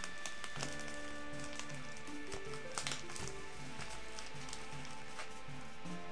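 Soft background music with sustained notes that change pitch slowly, with a few faint crinkles of foil booster packs being handled.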